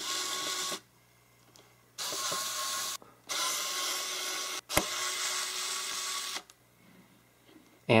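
Xiaomi electric precision screwdriver motor whirring in four short runs of about one to one and a half seconds each, backing out the tiny screws of a watch caseback. There is a sharp click between the third and fourth runs.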